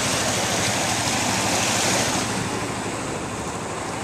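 Fast, swollen floodwater of a river in spate rushing past the bank, a steady rushing noise that eases a little about two seconds in.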